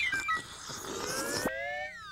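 Cartoon sound effect of juice being sucked up a crazy straw: a quick falling whistle at the start, then a long rising whistle-like glide, with a single click partway through.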